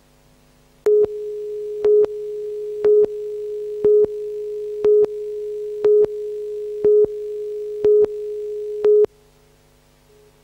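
Videotape countdown leader: a steady line-up tone starts about a second in, with a louder beep once a second marking the count, nine beeps in all, and cuts off suddenly about nine seconds in. A faint hum sits under it before and after.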